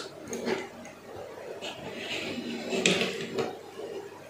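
A small die-cast toy car pushed by hand across a tabletop: faint rolling of its little wheels with a few light clicks and scrapes.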